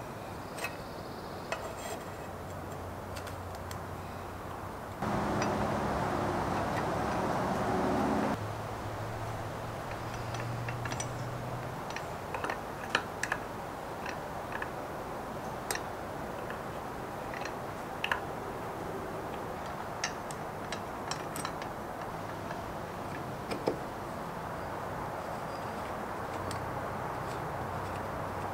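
Light metal clicks and taps of a brass hand air pump's rods, wooden handle and fittings being handled and fitted together, over a steady low hum. About five seconds in, a louder steady noise cuts in for about three seconds and stops suddenly.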